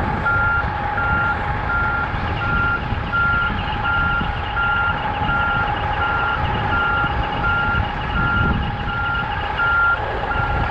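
Backup alarm on a large forklift beeping about twice a second, over the steady running of its diesel engine.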